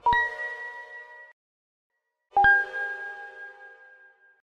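Two metallic ding sound effects on a logo animation, each a sharp strike that rings and fades. The first sounds right at the start and dies away after about a second; after a short silence a second, slightly lower ding strikes about two and a half seconds in and rings out slowly.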